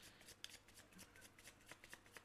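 Faint tarot cards being shuffled by hand: a quick run of soft card flicks.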